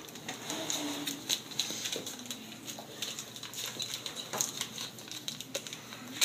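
Blue painter's tape being handled and pressed onto a plastic camera water housing: soft crinkling with a scatter of small clicks and taps.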